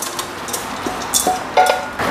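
A wooden spatula scrapes and knocks rice out of a pan into a metal rice-cooker inner pot, with scattered light knocks and clicks. A sharp knock with a brief metallic ring comes about one and a half seconds in.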